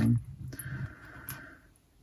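A faint single click from a small metal jewellery clasp handled in the fingers, a little over a second in.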